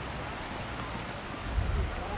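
Creek water rushing over shallow rocky rapids, a steady even hiss. Wind rumbles on the microphone near the end.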